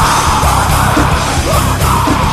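Loud heavy metal music: distorted guitars and pounding drums with a yelled vocal.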